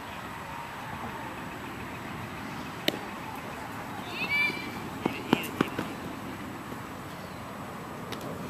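A metal baseball bat hitting the ball with one sharp ping about three seconds in. A short shout follows about a second later, then three sharp smacks in quick succession.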